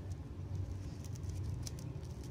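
Three-strand synthetic rope being worked by hand as its strands are tucked for a back splice: faint scratchy crackles of fibres rubbing, over a steady low hum.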